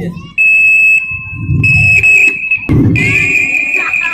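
Microphone feedback through a PA system: a steady high-pitched howl that starts about half a second in, drops out briefly near three seconds and comes back, with a voice underneath.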